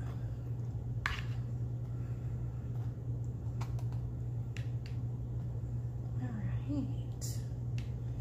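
A metal spoon spreading chunky enchilada sauce over a fried tortilla on a foil-lined pan, with a few sharp clicks of the spoon against the tortilla and foil, over a steady low hum.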